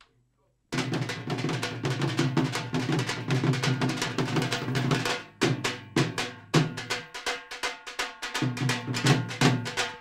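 Live drumming with fast, dense strokes that start abruptly about a second in. After about five seconds it breaks into sharper accented hits with short gaps.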